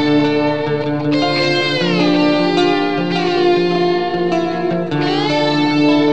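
Instrumental passage of a rock song: sustained lead guitar notes over a steady backing, sliding down in pitch about a second in and up again near five seconds.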